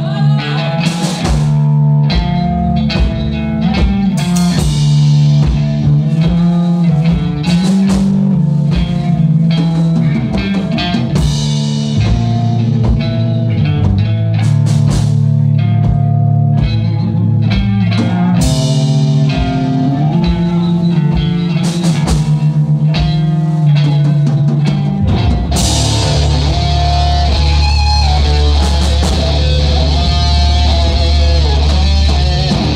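Live rock band playing an instrumental passage on electric guitar, electric bass and drum kit, with a steady driving drum beat. About 25 seconds in the bass end thickens and cymbals wash over it as the band moves into a heavier section.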